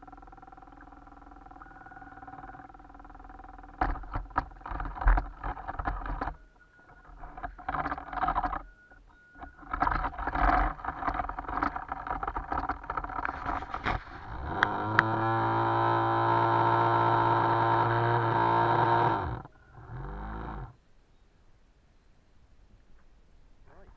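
Motor of a small radio-controlled boat whirring in short on-off spells, mixed with sharp clicks and knocks. About fifteen seconds in it spins up to a steady, louder whine, holds it for about five seconds and cuts off, with one brief burst after.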